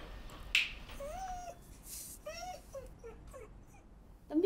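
An animal whimpering: several short, high whining cries that rise and fall in pitch.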